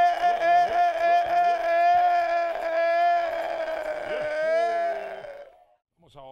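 Congregation singing together over music, with one long high note held throughout, fading out about five seconds in.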